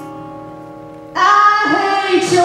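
Live female country vocal with acoustic guitar accompaniment. A long held note fades away, then about a second in she comes in loudly with a new sung phrase over the guitar.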